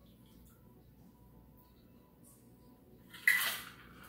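A barely audible pour from a metal cocktail shaker tin into a glass, then about three seconds in a single sharp metallic clank with a short ring from the tin and its ice.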